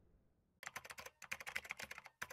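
Computer-keyboard typing sound effect: a rapid run of key clicks starting about half a second in, with a brief pause near the middle.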